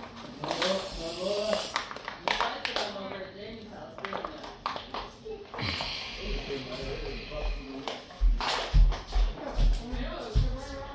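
Indistinct voices with music behind them, too unclear to make out any words. Several low thumps come in quick succession near the end and are the loudest sounds.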